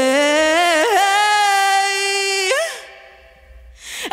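A female singer holds one long wordless note with vibrato, stepping up in pitch about a second in, then lets it fall away about two and a half seconds in. A short hush follows before the music comes back right at the end.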